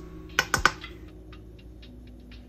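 Wooden spatula knocking against a glass bowl as cooked food is scraped in from a pan: three quick, sharp clicks close together about half a second in, over soft background music.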